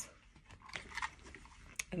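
Faint handling noises, soft rustles and a few small clicks, as a plastic neck fan is picked up by its lanyard.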